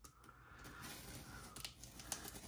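Faint scratching of a hand-held blade cutting along the packing tape on a cardboard box, with a couple of light clicks near the end.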